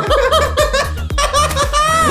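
People laughing over background music with a steady beat.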